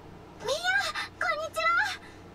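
High-pitched young girl's voice from a Japanese anime soundtrack: three short vocal sounds about half a second in, each rising and falling in pitch.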